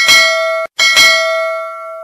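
Notification bell sound effect from a subscribe-button animation, dinging twice. The first ding is cut off after about half a second; the second rings on and slowly fades.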